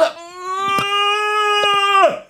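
A man's voice holding one long, high, steady wailing note for nearly two seconds, swooping up into it at the start and dropping away at the end, with a few faint clicks over it.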